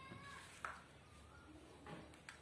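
A faint high call falling in pitch, like a meow, fading in the first half-second, then a sharp click about two-thirds of a second in and a softer knock near the end.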